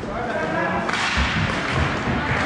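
Hockey play: a sharp crack of a stick striking the puck about a second in, followed by a few dull thuds on the rink, with players' voices in the hall.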